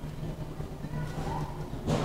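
Big-box store room tone: a steady low hum under faint background noise, with a brief rustle or bump from the camera being handled just before the end.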